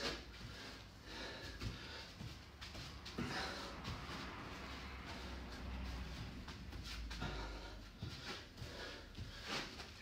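Faint breathing and the scuffing of hands and trainers on artificial turf as a man does bear crawls, with scattered small ticks over a low, steady room rumble.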